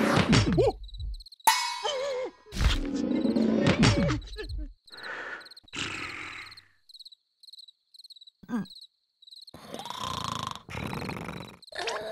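Wordless cartoon larva vocalizing: groans and sighs with wavering pitch, in several spells with a quiet gap near the middle, and a short comic sound effect after about a second and a half. A faint, even cricket chirping runs behind it.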